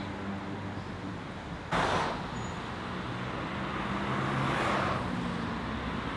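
City road traffic: a steady wash of car engines and tyres, with a vehicle swelling past about four to five seconds in.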